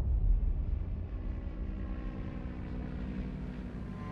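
Single-engine turboprop airplane flying overhead: a low engine drone with a steady hum, loudest at the start and slowly fading away.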